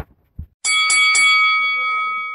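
Bell sound effect struck three times in quick succession about half a second in, then ringing on and slowly fading.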